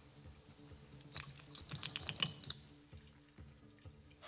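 A quick flurry of light plastic clicks and taps lasting about a second and a half, from mascara wands and tubes being handled. Faint low sustained tones run underneath.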